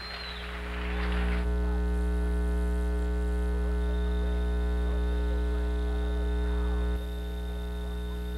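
Steady electrical mains hum on the recording's audio line, a loud low buzz with a stack of overtones. It drops a little in level about seven seconds in.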